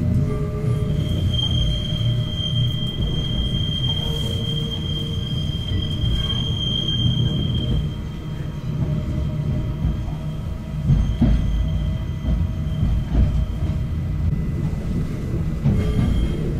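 Narrow-gauge electric railcar running, heard from inside the car: a steady low rumble of the wheels on the track. From about a second in until about halfway through, a high, steady wheel squeal rides over it, then fades out.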